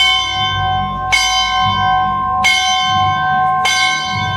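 A single bell, most likely a church bell, struck over and over about once every second and a quarter, four strokes here, each ringing on into the next.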